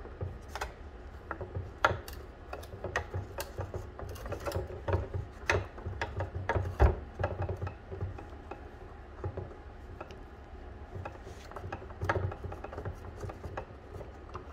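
A screwdriver with a T10 Torx bit turning out a small screw from the back of a Tesla Wall Connector faceplate, making a run of irregular small clicks and ticks. There is a louder knock about seven seconds in.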